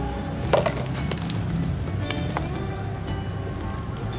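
Potting soil being knocked and shaken loose from a young philodendron's roots over a plastic basin: a few light knocks, the sharpest about half a second in, with crumbling and rustling of soil.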